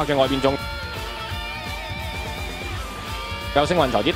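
Background music with held, steady notes, heard on its own for about three seconds. Fast speech ends about half a second in and starts again near the end.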